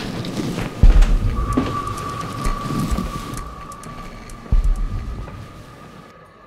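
Dramatic soundtrack: a deep, rumbling low boom about a second in and another about four and a half seconds in, with a steady high held tone coming in after the first boom and fading with the rest.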